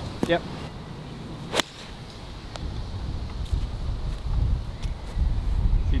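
A golf iron striking the ball off the tee: a single sharp crack about one and a half seconds in. After it comes a low rumble of wind on the microphone.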